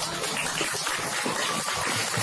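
Audience reacting with laughter and clapping: a steady noisy wash with faint voices in it.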